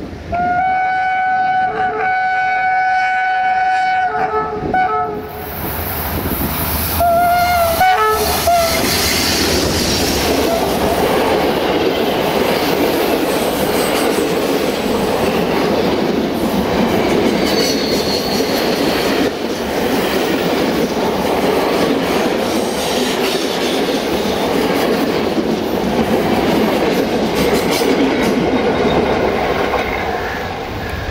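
CFR class 65 diesel-electric locomotive sounding its multi-tone horn in one long blast of about four seconds, then a shorter second blast a few seconds later. Then a twelve-carriage passenger train runs close past for over twenty seconds, its wheels clattering over the rail joints in a steady rumble.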